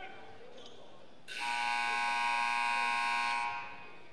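Gymnasium scoreboard horn sounding one long, steady blast of about two seconds, starting about a second in and trailing off into the hall's echo.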